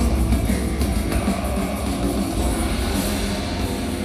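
Black metal band playing live through a loud PA: a dense, continuous wall of distorted band sound with heavy low end, heard from the crowd.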